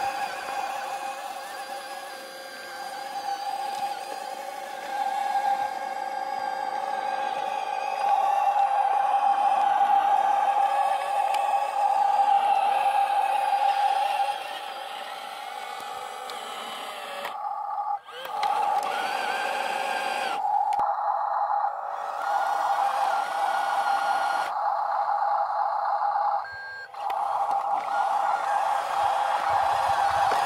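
Radio-controlled 6x4 dump truck's electric drive motor and gearbox giving a steady high whine while it tows two trailers. The whine gets louder about eight seconds in and drops out briefly a few times.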